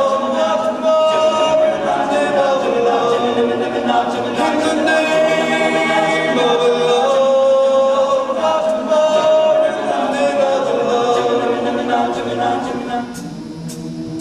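Male a cappella group singing close harmony in held chords, the top line moving between notes every second or two. Near the end the voices drop back and soft high ticks come in, about two a second.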